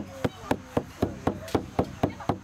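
Handmade elk-hide frame drum beaten in a steady rhythm, about four strokes a second, each stroke ringing briefly.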